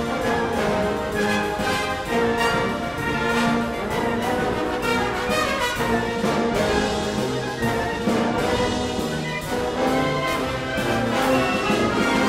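Military band and bugles playing, with the brass to the fore over a steady stroke of percussion; the sound swells louder near the end.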